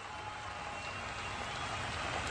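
Faint, steady open-air ambience of a cricket ground: an even hiss of background noise that grows slowly a little louder, with no distinct impacts.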